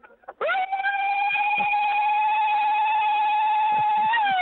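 A woman's zaghrouta, a long, high ululation held at one pitch, starting about half a second in, heard over a telephone line.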